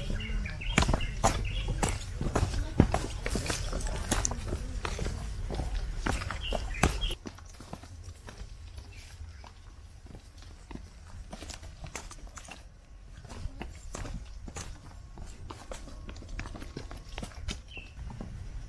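Hikers' footsteps on a dry dirt and rocky forest trail, a steady run of crunching and scuffing steps over leaf litter and loose stones. The first seven seconds are louder, then it drops suddenly to quieter steps.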